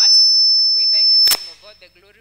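Microphone feedback through a public-address system: a loud, steady high-pitched squeal that cuts off suddenly with a sharp click about a second and a half in.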